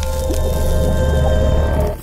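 Intro music for an animated logo: sustained tones over a deep bass, with a bright splashy swell, fading away just before the end.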